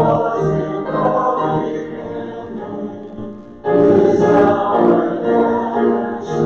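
Group of voices singing a hymn together in a church sanctuary, in sustained phrases, with a loud new phrase beginning about three and a half seconds in.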